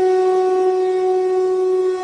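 A single long horn-like note held at one steady pitch, like a blown wind instrument.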